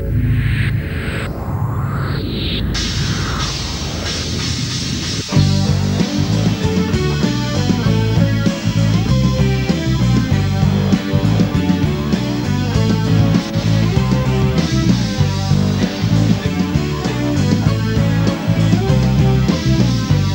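Rock band playing an instrumental passage with no singing: about five seconds of swooping, sweeping sounds over a low sustained bass, then the full band with electric guitars and drums comes in suddenly and much louder, in a steady driving rhythm.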